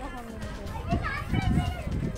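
Distant children's voices and chatter outdoors, heard faintly over a low rumbling noise on the phone microphone.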